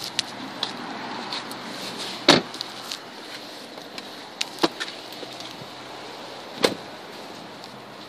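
2014 Chrysler 300's doors and trunk latch: three sharp knocks, the loudest about two seconds in, as doors are shut and the trunk is released, over a steady background hum.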